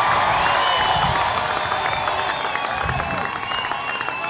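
Large rally crowd cheering and applauding, a dense wash of clapping and voices.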